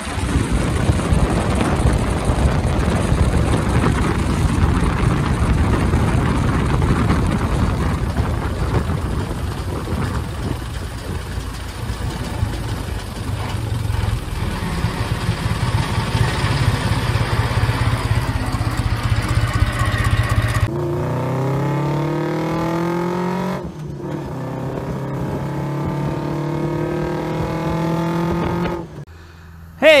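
Ford Model T four-cylinder engine running as the car drives along the road, with wind and tyre noise on the microphone. About two thirds of the way in the sound changes abruptly to a clearer engine note that falls in pitch and then holds steady, as the car slows.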